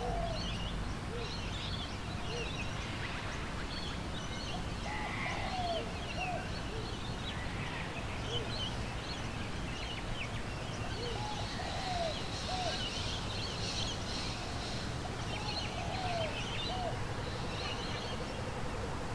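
Outdoor birdsong: many small birds chirping, with a lower down-slurred call repeated in short groups of two or three about every five seconds, over a steady low rumble.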